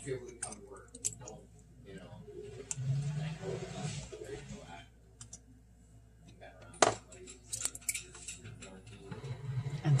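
A syringe forces air into a raw egg through a single drilled hole, pushing the egg's contents out of the hole in a sputtering stream that drips into a bowl. There is a hiss-like noise for about a second and a half a few seconds in, then a sharp click and a few smaller clicks later on.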